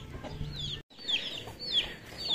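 Chickens: a string of short, high, falling peeps over faint low clucking. The sound drops out for an instant just under a second in.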